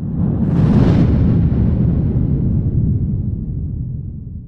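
Cinematic boom sound effect: a sudden deep rumbling hit with a brief rushing whoosh on top, dying away slowly over about four seconds.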